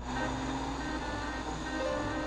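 Cartoon sound effect of a car driving, a steady engine and road noise, over light background music that starts as the scene begins.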